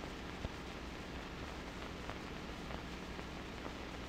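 Steady hiss and faint crackle of an old 16mm film soundtrack between narration lines, with a single small click about half a second in.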